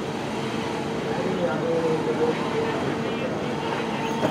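Indistinct distant voices over a steady background hum, with no clear words.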